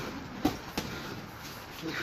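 Two dull knocks of a boxing sparring exchange, gloves landing and feet on the ring canvas, a short way apart, over a steady background rumble.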